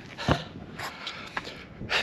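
Camera handling noise: a single soft knock about a third of a second in, then faint rustling as the camera is picked up off the ground and moved.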